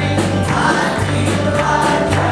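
A gospel hymn sung by a woman leading at the microphone with the congregation joining in, over instrumental accompaniment with a steady beat and a walking bass line.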